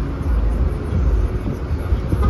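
New Flyer XDE40 diesel-electric hybrid bus running while stopped at the curb: a steady low rumble from its drivetrain.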